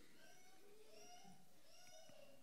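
Near silence: room tone, with a few faint pitched sounds that rise and fall.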